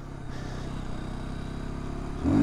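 Aprilia supermoto motorcycle engine running steadily while the bike rolls along slowly.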